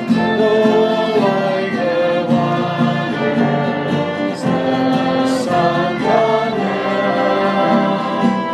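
Voices singing a worship song together to a strummed acoustic guitar.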